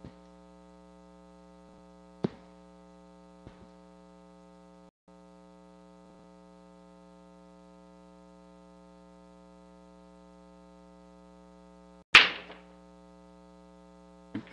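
Pool break shot: one sharp crack as the cue ball smashes into the racked balls about twelve seconds in, followed by a brief clatter as they scatter. A steady electrical hum runs underneath, with a smaller knock about two seconds in.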